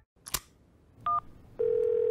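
Smartphone placing a call: a click, then a short keypad beep about a second in, then a steady low calling tone that starts about a second and a half in.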